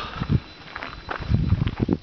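Wind buffeting the microphone of a handheld camera in uneven low gusts, with a few light knocks of handling noise.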